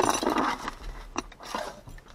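Seatbelt webbing and its retractor being pulled out of a cardboard box: a rustling scrape at the start, then a couple of light metallic clicks from the belt hardware.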